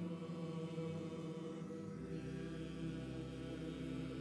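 Church choir singing long, held chords with pipe organ accompaniment; a low organ bass note comes in about halfway through.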